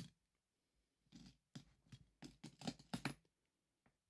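Philippine one-peso coins clinking and clicking against each other as they are handled: a quick run of light metallic clicks from about a second in until near the end.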